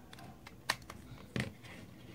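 Two short, sharp plastic clicks, about two thirds of a second apart, from handling an LED bulb in its plastic lamp holder.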